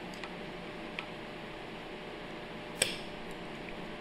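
A few light metallic clicks of a thin hand tool working at the parts in a piston pump's body, the sharpest a little before three seconds in, over a steady low hiss.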